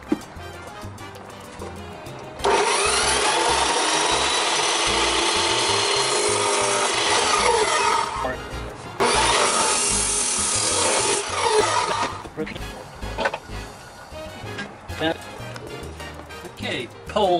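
Abrasive cut-off saw cutting through steel pipe: a loud grinding run starting about two seconds in and lasting about five seconds, then after a brief break a second, shorter run.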